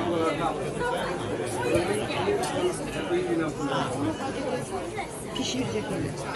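Indistinct, overlapping voices talking: background chatter with no clear words.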